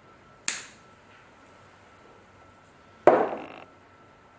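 A sharp plastic click from a foam pump head being turned, then about two and a half seconds later a louder knock as a glass bottle is set down on a wooden table.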